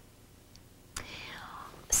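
About a second of near silence, then a soft click and a woman's audible breath in through the mouth lasting most of a second, just before she speaks again.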